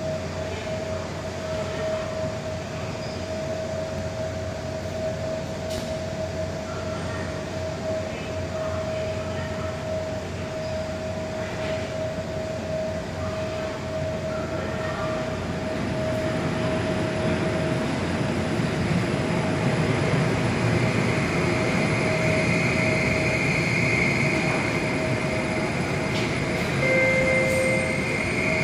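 ECOBEE maglev train approaching the station: a steady electric hum and tone that build in level over the second half, with a high whine growing in. A short electronic tone sounds near the end.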